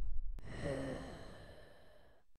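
The low rumble of an explosion dying away, then a sharp click and a short, faint sigh falling in pitch. It fades out near the end.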